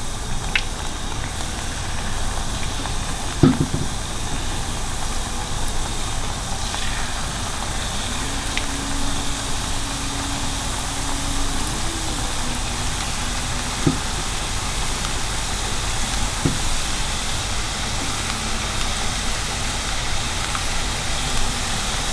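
Jalebi batter deep-frying in hot oil in a pan: a steady sizzle throughout, with a few light clicks.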